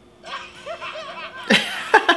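A woman bursts into loud laughter close to the microphone about one and a half seconds in, after quieter voices.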